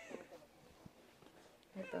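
A small child's whimpering cry trailing off with a falling pitch at the start, then quiet indoor room sound with one faint click. A short spoken word comes near the end.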